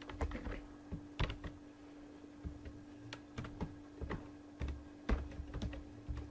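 Computer keyboard being typed on: irregular key clicks, a few a second, with pauses between them. A faint steady electrical hum runs underneath.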